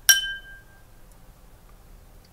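A small bell struck once: a bright ding with a clear ringing tone that fades within about half a second, the signal for the student to pause and answer.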